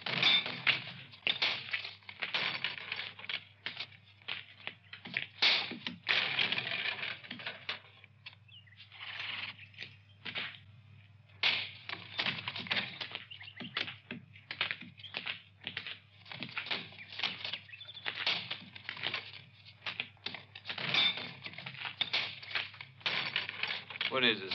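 Horse hooves and boot footsteps on hard-packed ground: an uneven run of sharp clicks and knocks, several a second.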